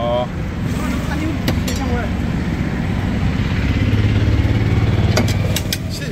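A motor vehicle's engine running close by over street noise, swelling louder about four seconds in and easing off near the end. A few sharp clicks sound near the end.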